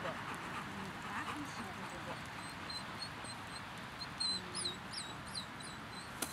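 A small bird chirping: a run of short, high, quick calls that starts about halfway through and is loudest near the end.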